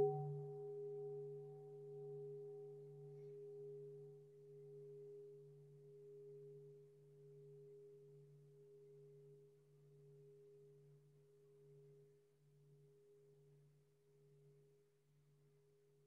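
A singing bowl ringing out after being struck, its low tone wobbling in slow pulses as it fades away over about ten seconds, marking the start of a silent meditation sitting.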